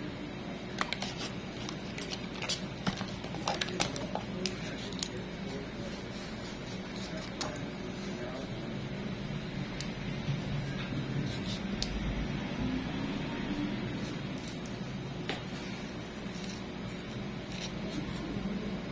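Small sharp clicks and scrapes of metal pedicure tools, a thin nail file and then nail nippers, working at the edge of a toenail. They come in a cluster over the first few seconds and then now and then, over a steady background hum.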